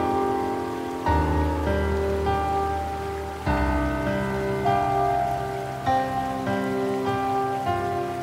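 Slow, soft piano music: held chords, with a new chord or note struck every second or so.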